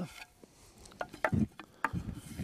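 Short wooden branch pieces being handled and knocking against each other, with a few light clacks about a second in and again near the end.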